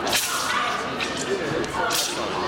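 A wushu competitor's form: two sharp whip-like cracks, one right at the start and one near the end, over a murmur of voices in a large gym hall.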